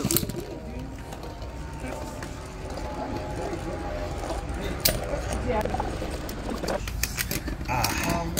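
Two metal Beyblade spinning tops spinning in a plastic stadium bowl: a faint steady whir, with a few sharp clicks as the tops knock together, about five seconds in and again near the end.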